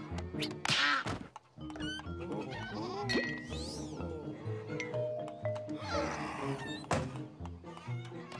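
Cartoon background music with comic sound effects: sharp clicks and knocks, a falling glide, and animal bleats and cries, the loudest about a second in and near the end.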